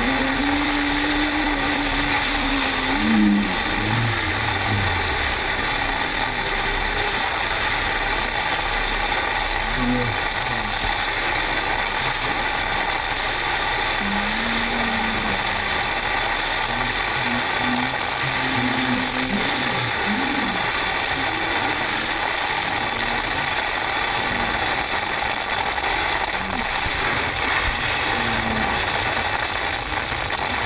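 Steady rushing hiss of water running down a wet plastic slip-and-slide, with a few short distant shouts from the sliders.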